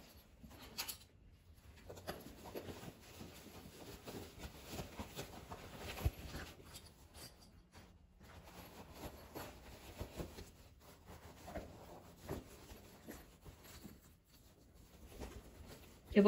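Faint, irregular rustling and light knocks of fabric pieces being handled and turned right side out by hand on a sewing table, with one sharper tap about six seconds in.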